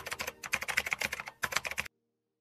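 Typing sound effect: a rapid run of key clicks laid under tagline text being typed onto the screen. It stops abruptly just before the end.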